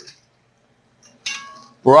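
Kitchenware clinks once, sharply, about a second in, with a brief ringing tail. A faint tick comes just before it.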